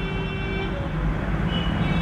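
Steady low background rumble, with a faint high tone near the end.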